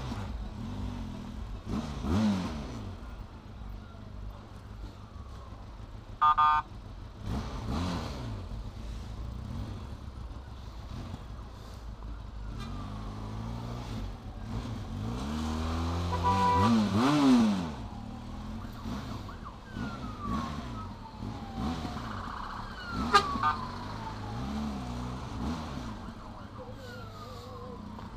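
Benelli TRK 502X motorcycle's parallel-twin engine running at low revs while creeping through traffic, with several throttle blips that rise and fall in pitch; the longest and loudest comes about fifteen to seventeen seconds in. A short beep sounds about six seconds in.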